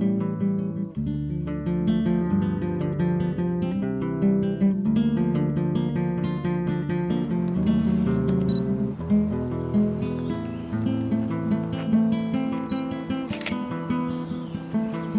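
Acoustic guitar music with picked notes over low bass notes. From about seven seconds in, a steady high-pitched insect chorus sounds beneath it.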